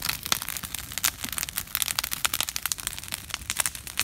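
Wood bonfire crackling, with rapid, irregular sharp pops and snaps.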